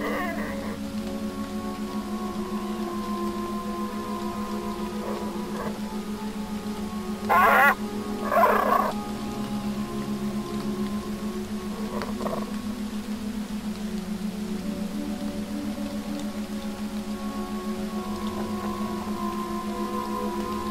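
Slow ambient music: a steady, pulsing low drone with long held tones above it. About seven and eight and a half seconds in, two loud wavering animal calls cut in, with fainter calls near five and twelve seconds.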